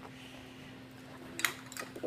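A couple of short plastic clicks near the end as Lego Bionicle pieces are handled on a table, over a steady low hum.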